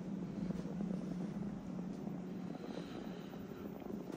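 Steady low hum inside a Schindler 3300 machine-room-less traction elevator cab, holding one even tone.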